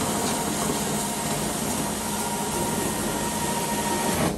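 Carpet-cleaning extraction wand running under suction as it is drawn across carpet: a steady rush of vacuum airflow with a faint steady whine.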